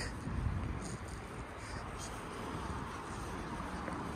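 Steady low rumble and hiss of outdoor background noise, with a few faint light knocks and no clear single source standing out.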